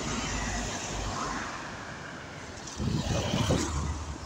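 Irisbus Citelis city bus passing close by and pulling away, its diesel engine and tyre noise fading. Near the end comes a louder stretch of low rumbling.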